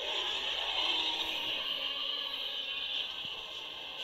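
Tyrannosaurus roar sound effect from a film clip: one long, rasping call that starts abruptly and slowly fades over about four seconds.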